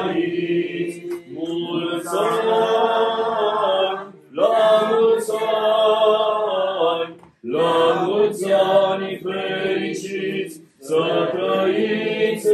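Chanted singing by voices in long sustained phrases, in the style of Orthodox church chant, with brief pauses about four, seven and a half and eleven seconds in.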